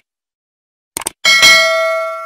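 Subscribe-button animation sound effect: quick mouse clicks right at the start and again about a second in, then a notification bell ding that rings out with several clear, steady tones.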